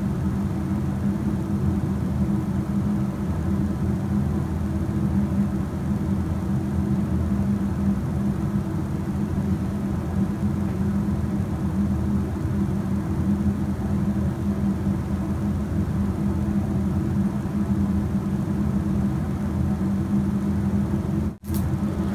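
A steady low hum that stays unchanged throughout. It cuts out for a moment near the end.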